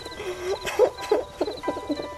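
A high voice sobbing in wavering, broken cries, over soft background music.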